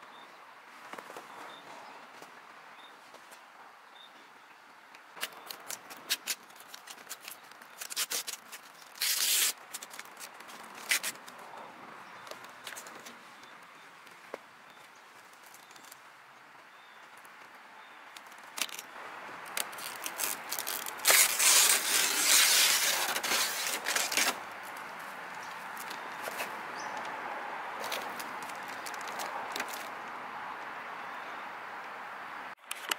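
Vinyl wrap film being cut with a razor blade and pulled off the grille: scattered clicks and crackles, then a loud crackling rustle about two-thirds of the way in. Near the end a steady rushing noise sets in.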